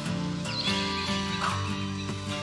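Guitar music from the instrumental close of a song, with a brief high, wavering sound that glides in pitch over it from about half a second in.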